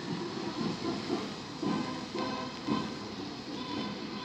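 A band playing in the distance, heard faintly as short, pitched notes over the hiss of street ambience.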